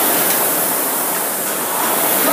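Fan flywheel of an air-resistance rowing machine, a continuous loud whoosh of air as the rower drives hard through the strokes of a 2,000 m test.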